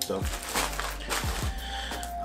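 Clear plastic bag of packaged candies crinkling as it is handled and set down on a wooden table.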